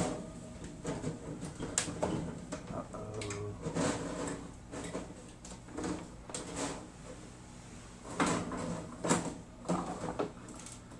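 Metal mesh terrarium screen lid and dome clamp lamp being handled on a glass tank: a run of irregular knocks and rattles, louder in a cluster near the end.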